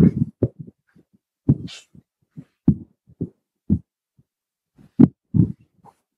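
A man's voice making short, low murmurs, about a dozen separate bursts with dead silence between them, as heard over a video call.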